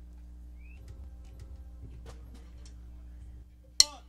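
Low, steady amplifier hum with faint stage noises, then near the end one sharp wooden click: drumsticks struck together, the first beat of the drummer's count-in.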